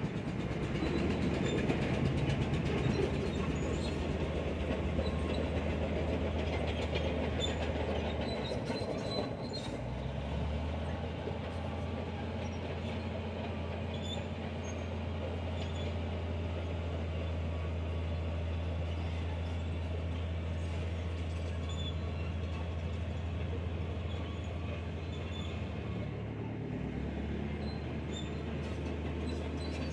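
Komatsu D68E crawler dozer working: its diesel engine runs steadily under load while the steel tracks clank and squeal as it pushes soil. The engine note shifts up about ten seconds in and changes again near the end.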